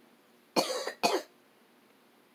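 Two coughs in quick succession, about half a second apart, from a person who is sick.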